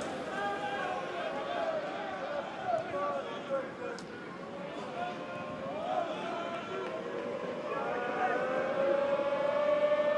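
Football crowd in the stands singing a chant together, held sung notes over general crowd noise. There is a single sharp click about four seconds in.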